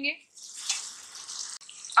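Onion-tomato masala with yogurt sizzling in hot oil in a pan as it is stirred and fried. The oil has begun to separate from the masala. A steady hiss breaks off about a second and a half in.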